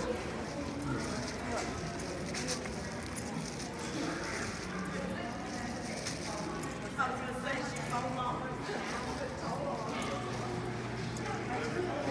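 Indoor shopping-mall ambience: footsteps clicking on a tiled floor, with voices talking in the background and a brief stretch of clearer speech about seven seconds in.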